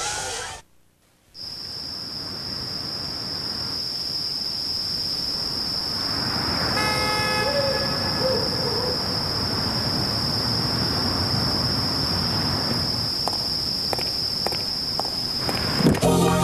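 A brief drop to near silence about a second in, then a low ambient hiss with a steady high-pitched whine running on top of it. A short horn-like toot sounds about seven seconds in, and a few faint clicks come near the end.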